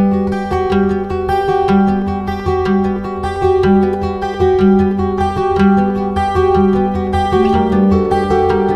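Background music: plucked guitar with a steady rhythm of notes.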